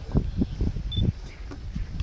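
A series of irregular short clicks and low knocks, with a brief high chirp about a second in.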